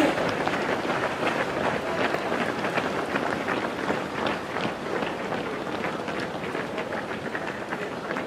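Footsteps of a pack of runners on an asphalt road: a dense stream of quick, overlapping steps that thins out and gets quieter toward the end as the last runners go by.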